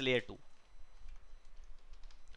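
Computer keyboard being typed on: a few faint, separate key clicks.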